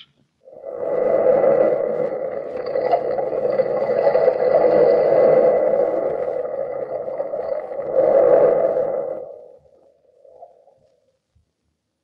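Radio-drama sound-effect bridge of sea surf: a long rushing swell that rises twice and dies away about nine seconds in, with a faint steady high tone running through it.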